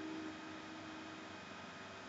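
Steady hiss of an old film soundtrack, with a faint held tone that stops about one and a half seconds in.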